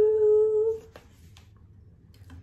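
A woman hums one long held note, steady in pitch, that ends about a second in; after it, only faint room noise with a couple of soft clicks.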